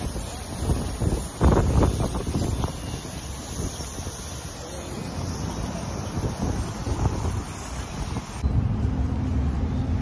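Airbrush spraying temporary-tattoo ink through a stencil, a steady high hiss that cuts off about eight and a half seconds in. Wind buffets the microphone throughout, with a strong gust about a second and a half in.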